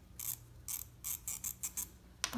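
Fabric marking pencil scratching across cotton fabric in about seven short, quick strokes as a mark is drawn on the folded edge.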